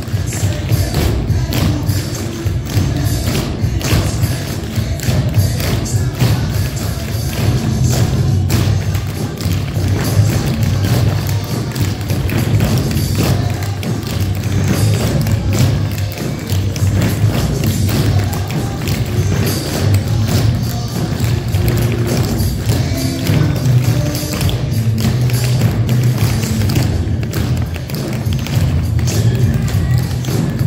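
Many tap shoes striking a wooden floor in rapid, rhythmic patterns as a group of dancers taps together, over recorded music with a steady bass line.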